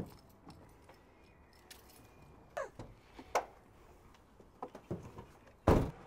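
Faint clicks and knocks from a van door being handled, with a louder thump near the end.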